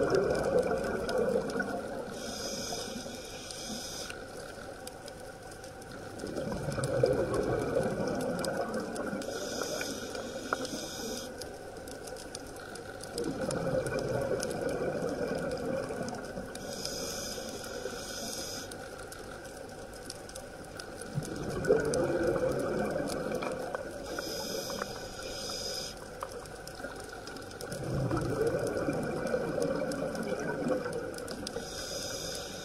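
Scuba diver breathing through a regulator underwater: a hissing inhalation of about two seconds, then a louder burst of exhaled bubbles, repeating about every seven seconds.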